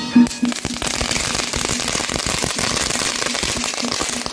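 A string of firecrackers going off in a rapid, unbroken crackle of bangs. It starts with a loud burst just after the fuse burns down and keeps going.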